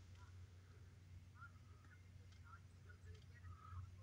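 Near silence: room tone with a steady low hum and a few faint, short, high chirps.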